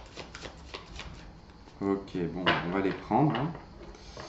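Tarot cards shuffled by hand: a quick run of crisp card clicks through the first second or so. Then a voice makes a few short sounds with no clear words for about two seconds, louder than the shuffling.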